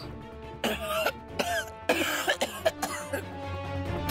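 A man coughing in several harsh fits over background music with held notes, a cough that brings up blood.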